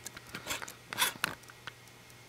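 A few short, soft rustling noises, with a small click near the end, over a quiet room.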